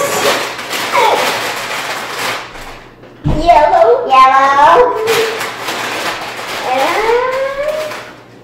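A woman and children laughing and talking excitedly, with loud high-pitched voices about three seconds in and again near the end.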